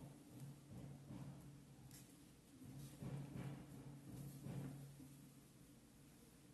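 Near silence: faint rustles of cotton fabric being handled and pinned, coming in a few soft brief bursts, over a low steady hum.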